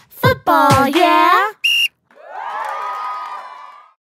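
A voice, then a short single blast of a referee's whistle, followed by a group of children cheering that fades away.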